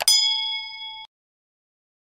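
A sharp click, then a bright bell-like ding that rings for about a second and cuts off suddenly: a subscribe-button sound effect marking the click on 'subscribe'.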